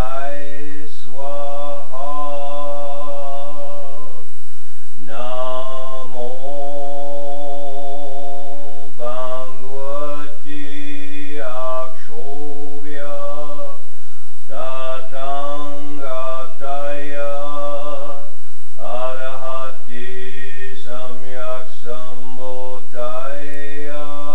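A man chanting a Buddhist mantra aloud, in long, evenly pitched phrases separated by short breaths.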